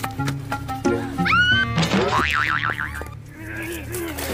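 Comedy-clip background music with added cartoon-style sound effects: a quick sound that slides up in pitch just after a second in, then a fast warbling tone that wobbles up and down around the two-second mark.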